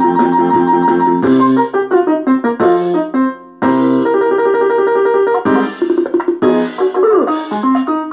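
Bontempi PM 678 electronic keyboard playing its built-in factory demo tune through its own speakers, a melody over chords. The music drops away briefly a little past three seconds in, then picks up again.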